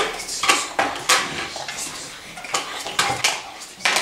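Plastic toy food pieces being handled and set down on a tray and table: a string of irregular sharp clacks and knocks, a few of them louder.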